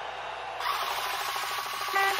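A noisy transition sound effect that goes with an animated graphic, getting louder about half a second in, with rapid even ticking through its second half.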